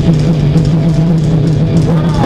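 Live rock band playing loudly: electric guitar and drum kit, with one low note held steadily throughout.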